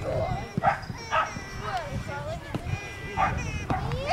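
Children's voices chattering on the pitch, with three short sharp calls: two close together in the first second or so and one just past the three-second mark.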